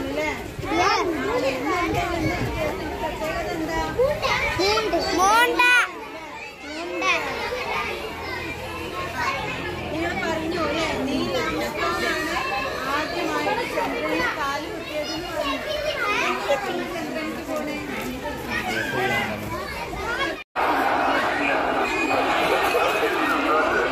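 Many children's voices talking and calling out at once, overlapping, with an adult voice among them. The sound cuts out for an instant near the end.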